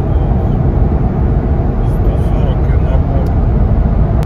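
Cabin noise of a Lexus LX 450d's twin-turbo V8 diesel and its tyres at highway speed: a steady, loud low rumble. The engine has had its EGR and diesel particulate filter removed and its software remapped.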